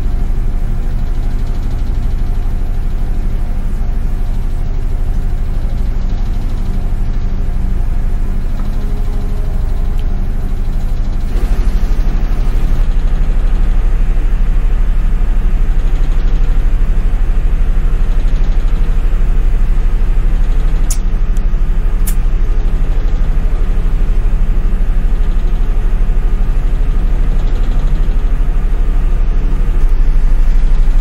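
Steady, loud, low engine hum of a ship's machinery, stepping up in level about eleven seconds in. Two sharp clicks come about a second apart past the two-thirds mark.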